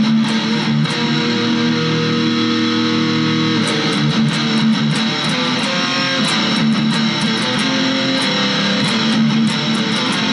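Dean Vendetta electric guitar played through an amp on heavy distortion, heard through a small action camera's microphone: held distorted chords, then busier picked riffing from about four seconds in.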